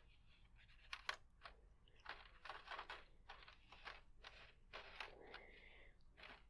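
Faint, irregular dabbing and scratching of an ink marker on tennis racket strings through a plastic logo stencil, with a couple of sharper ticks about a second in.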